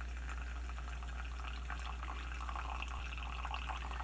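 Pine-needle tea trickling through a paper coffee filter in a pour-over cone into a cup: a faint, steady trickle with fine drips.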